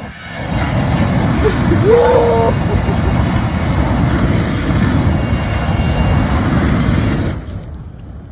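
Flamethrower firing: a loud, steady rushing blast for about seven seconds that cuts off suddenly near the end, with a brief shout about two seconds in.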